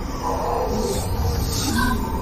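Ominous film score music, with an animal-like roaring, hissing sound effect swelling over it from about a second in.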